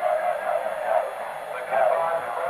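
Stadium crowd murmur: a steady wash of many voices, heard through thin broadcast audio with little bass.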